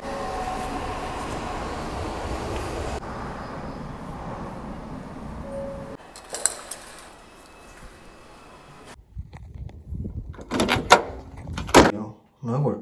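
Steady running noise inside a commuter train car, then quieter surroundings with a brief click. Near the end come several sharp clacks and keys jangling as a front door is unlocked and opened.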